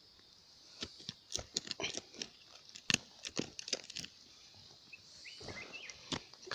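A bare hand scraping and clawing at loose, gravelly soil while digging out a wild yam: an irregular run of scratchy crunches and rustles for about three seconds, then quieter.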